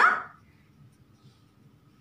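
The end of a spoken word with a rising pitch, then near silence with faint strokes of a felt-tip marker writing on paper.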